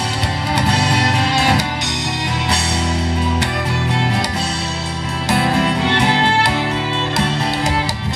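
Live acoustic folk band playing an instrumental passage: an acoustic guitar strummed in a steady rhythm under a bowed violin melody.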